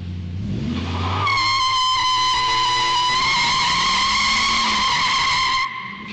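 Car engine revving, then tyres squealing in one high, slightly wavering tone that holds for about four seconds and cuts off suddenly.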